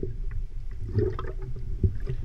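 Muffled underwater water noise picked up by an action camera in its waterproof housing: a steady low rumble with a faint knock near the end.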